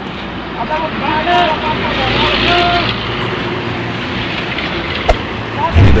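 Volvo EW130 wheeled excavator's diesel engine running steadily as it loads coal into a truck, with men's voices over it and a heavy thud near the end.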